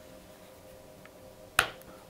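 Battery pack clipping onto the back of a Motorola XT460 two-way radio: one sharp snap about one and a half seconds in, followed by a fainter second click as it seats.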